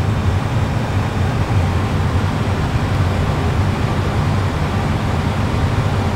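Steady low hum and rushing air noise in an Airbus A320 full flight simulator cockpit, holding level with no rise or fall in pitch.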